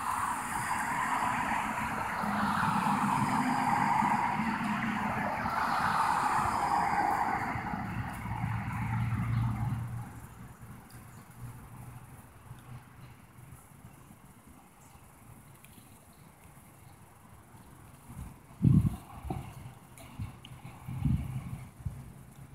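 A road vehicle passing by, its noise swelling and then fading away over about ten seconds. Near the end come two short low thumps.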